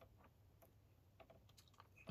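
Near silence, with a few faint clicks from the laptop's keys or trackpad as the web page is scrolled.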